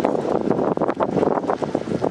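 Wind buffeting the camera microphone in loud, irregular gusts.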